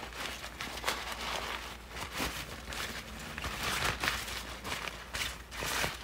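Folding nylon reusable shopping bag rustling and crinkling as it is unfolded and shaken open, in a run of irregular short rustles.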